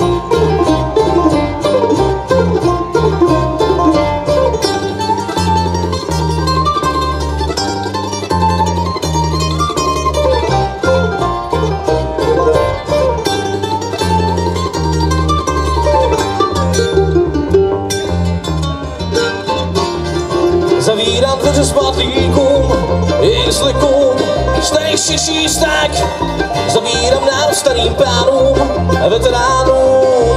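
Bluegrass band playing an instrumental passage on five-string banjo, mandolin, acoustic guitar and upright bass, the bass plucking steady stepping notes under quick picked melody lines.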